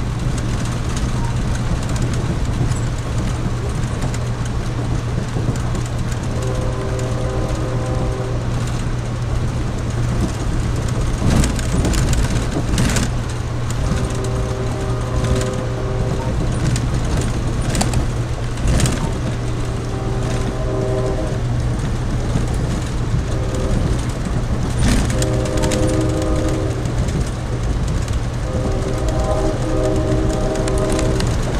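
Steady low rumble of a passenger train running, heard from inside the coach, with the locomotive's multi-chime horn sounding five times ahead, blasts of one to three seconds, for grade crossings. A few sharp clacks from the wheels come in the middle.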